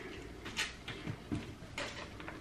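A few faint, short clicks and taps of small objects being handled, about four over two seconds, over quiet room tone.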